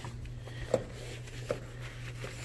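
Steady low room hum with two light knocks, the first under a second in and the second about halfway through, as a damp cloth is worked over gym equipment.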